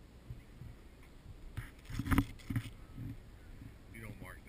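A low rumble with a short cluster of thumps and rubbing noises about two seconds in, the loudest near the middle.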